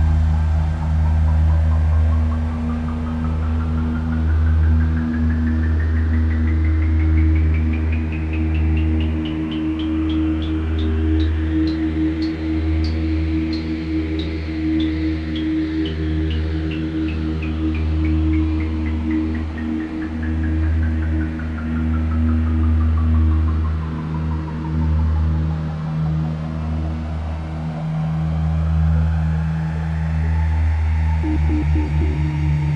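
Generative ambient synthesizer music: a deep steady drone under held tones, with a pulsing tone that glides slowly upward to a high peak about halfway through and then slides back down.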